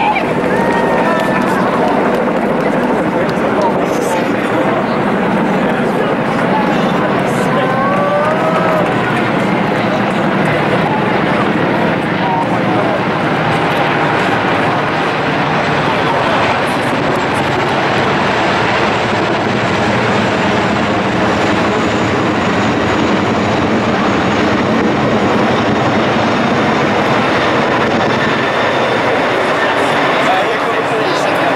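A formation of Chinook tandem-rotor helicopters passing overhead together, making a dense, steady rotor and engine drone. Voices are heard over it.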